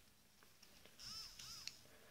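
Near silence, broken about a second in by two short, faint squeaks, each rising and then falling in pitch.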